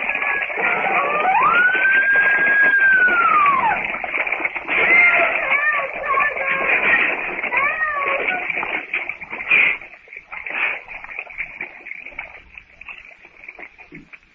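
A woman screaming in a radio drama: one long high scream that rises, holds and falls, then a string of shorter cries, dying away to a faint murmur near the end. It is an old, narrow, hissy recording.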